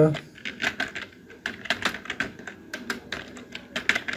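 Computer keyboard keys clicking in a quick, uneven run of taps.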